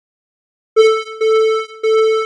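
A steady electronic tone played back through a noise gate (Cakewalk's Sonitus:gate), starting abruptly about three-quarters of a second in and chopped by short dropouts roughly every 0.6 s. The gate is set so the tone hovers near its threshold, so it opens and closes and the tone seems to pulse.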